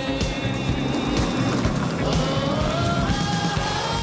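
Background music with a car engine heard under it, the engine's pitch rising as it accelerates through the second half.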